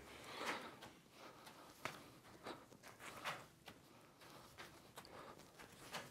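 Faint soft taps of juggling balls being thrown and caught in bare hands, a handful of them at uneven intervals.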